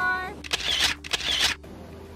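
A woman's and a girl's voices trailing off with a few short breathy bursts, then, from about one and a half seconds in, the steady rush of a shallow, boulder-strewn creek running over rocks.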